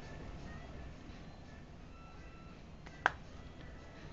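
A single sharp plastic click about three seconds in: the combo tool locking onto the Dyson Cinetic Big Ball's wand cuff. Faint background music underneath.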